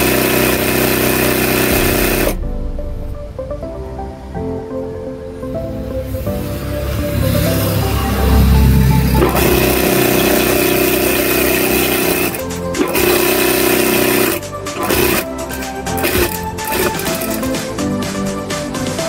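Background music over an industrial sewing machine stitching in runs: one run in the first couple of seconds and another from about the middle to near the end, with a pause between.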